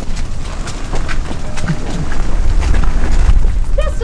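Heavy low rumble with scattered rattles and clicks, swelling in the second half: the metal-pipe frame of a pedal-powered polar bear art car being pushed and rolled along.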